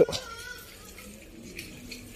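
A faint short animal call in the background near the start, a single thin tone falling slightly in pitch over about half a second; otherwise quiet outdoor background.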